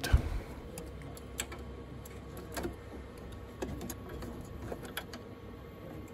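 Scattered light clicks and taps of plastic PCIe power-cable connectors and GPU cards being handled and pressed into place inside a server chassis, with a soft knock at the start.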